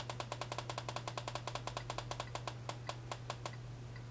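A computer mouse button clicked rapidly, about eight quick clicks a second for some three and a half seconds, the clicks spacing out and stopping shortly before the end.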